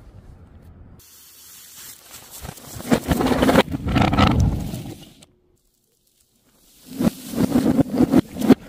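Water-filled balloons and liquid-filled plastic soda bottles bursting, with liquid splashing and spraying onto a hard floor. There is a loud stretch of splashing lasting about two seconds in the middle, then a second of dead silence, then another loud burst of splashing with sharp pops near the end.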